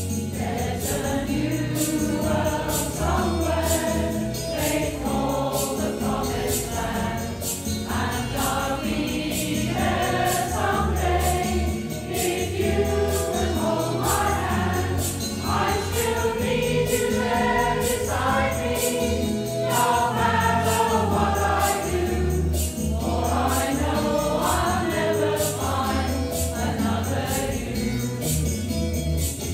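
Mixed choir of women and men singing together in performance, over an accompaniment with a steady beat of about two strokes a second and a deep bass line.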